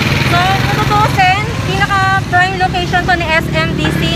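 A woman talking over street traffic, with a jeepney's engine running close by as a steady low hum.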